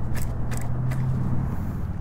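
Wind buffeting the camera microphone as a low, steady rumble, with a steady low hum through most of it and a few light clicks.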